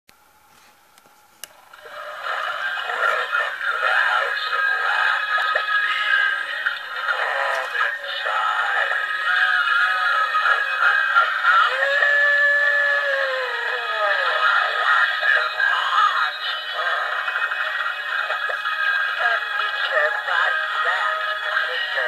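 Lemax Spooky Town House of Wax animated Halloween village building playing its built-in music and sound effects through a small, thin-sounding speaker with no bass. It starts after a click about a second and a half in, and sweeping pitch glides sound around the middle.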